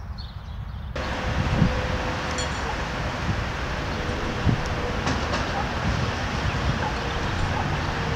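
Outdoor street ambience that starts abruptly about a second in: a steady wash of traffic noise with a low rumble, a faint steady hum and a few light clicks.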